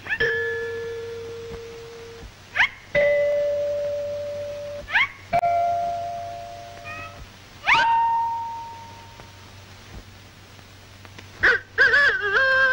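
Cartoon sound effects: four notes in turn, each pitched higher than the last, each starting with a click and a quick upward swoop and then held as a ringing tone that slowly fades. Another short swoop comes just before the end.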